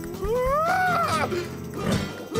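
A cartoon boy's long yell, a battle cry that rises in pitch for about a second and then falls away, over background music.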